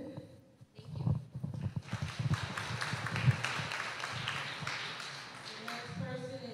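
Scattered audience applause in a meeting room, starting about two seconds in and thinning toward the end, with a few low knocks before it.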